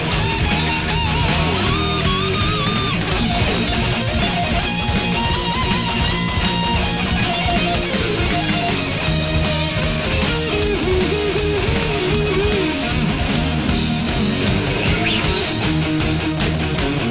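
Heavy metal band playing live: a distorted electric guitar solo, a single melodic line of bent and vibrato-shaken notes climbing and falling, over bass and drums.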